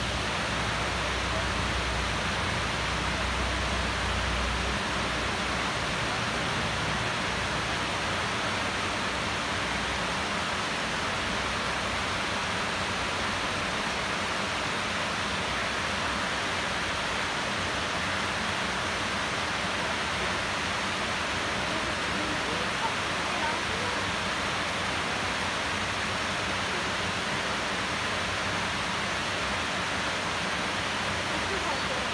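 Nomizo Falls, a small waterfall spilling over rock ledges into a pool, giving a steady rushing sound. A low rumble sits under it for the first few seconds.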